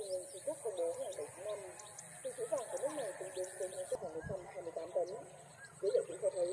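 Many short, wavering, voice-like animal calls overlapping in a steady chorus, with faint short high chirps above them.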